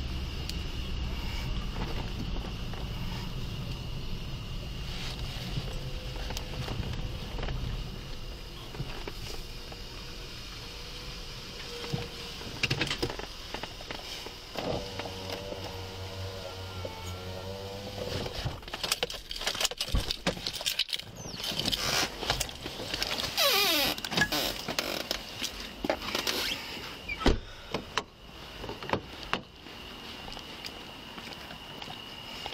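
Police car parking: a low engine rumble in the cabin that fades out after several seconds. A steady pitched tone sounds for a few seconds past the middle, then a run of clicks, knocks and rustling as the car is left on foot.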